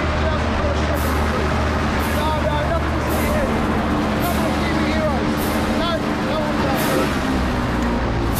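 Airboat's engine and caged rear propeller running steadily underway, a continuous low drone.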